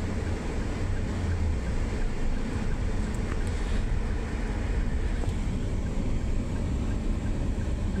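Steady low road and engine rumble inside the cabin of a moving Toyota car.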